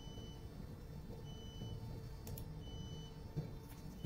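Quiet room hum with a short, high electronic beep repeating three times, about every second and a half, and a couple of faint computer-keyboard clicks as a value is typed into the loading computer.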